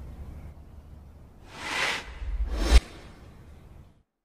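Two cinematic whoosh sound effects over a low hum, one about a second and a half in and a second just before three seconds. The second swells with a deep rumble and cuts off suddenly, and the sound then fades to silence.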